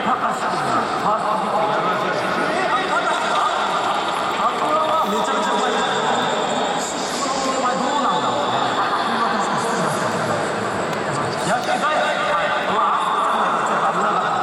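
Speech over a baseball stadium's public-address system, with crowd noise underneath.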